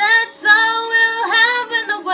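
A young woman singing solo, loud and close. Her voice comes in sharply at the start, breaks off briefly, then holds long notes with a small dip in pitch about halfway through.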